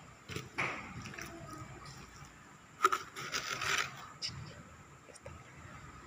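A plastic spoon scraping and knocking against a plastic container, in short bursts with one sharp click about three seconds in, while hands mix a minced meat filling.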